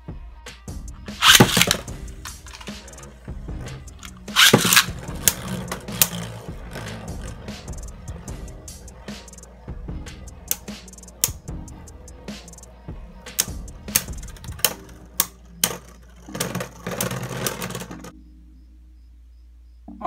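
Two Beyblade Burst tops, including Shelter Regulus, are ripped from their launchers into a plastic stadium about a second in. They spin and clash with many sharp plastic clacks, with another loud hit a few seconds later, and the clashing stops shortly before the end.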